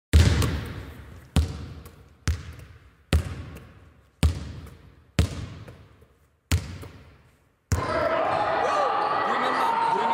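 A basketball bounced seven times at an uneven, slow pace, each thud sharp and ringing out with a long echo. Near the end it gives way to the steady din of a game in a gymnasium, with voices.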